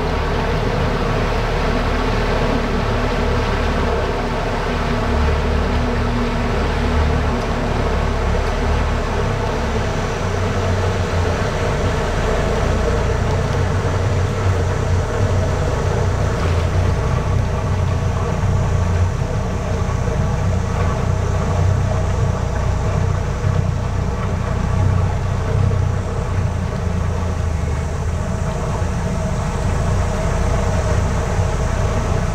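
Tour boat's engine running steadily under way, a continuous drone with a strong low hum that shifts slightly in pitch about ten seconds in.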